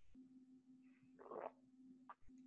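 Near silence: a faint steady hum, with one brief soft noise a little over a second in.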